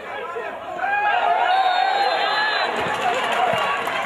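Several men shouting at once, their voices overlapping, louder from about a second in.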